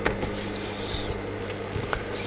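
Cotton print fabric rustling and sliding on a tabletop as it is handled and smoothed by hand, with a click at the start and a few faint ticks, over a steady low electrical hum.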